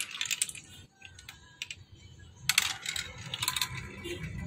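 Small plastic balls rolling and clattering down a plastic building-block marble run: a quick flurry of clicks at the start, a few scattered clicks, then a dense run of clicking about two and a half seconds in.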